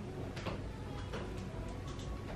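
Several small, sharp clicks at uneven intervals, the loudest about half a second in, over a steady low room hum.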